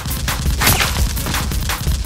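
Rapid, dubbed-in gunfire sound effects, shot after shot, laid over background music with a heavy bass beat.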